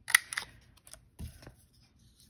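Handheld paper punch snapping through scrapbook paper: one sharp click just after the start, then a few fainter clicks.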